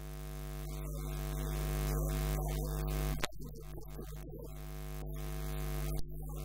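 A steady low electrical hum with a ladder of overtones, growing gradually louder and breaking off abruptly twice: a little over three seconds in and at the end.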